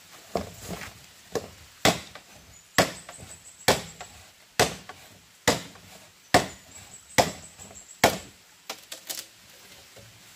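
Machete chopping into a green bamboo culm: about ten sharp strokes, roughly one a second, followed by a few lighter, quicker taps near the end.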